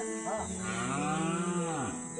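A cow mooing once: a single long call that rises and then falls, starting about half a second in and lasting about a second and a half, over steady background music.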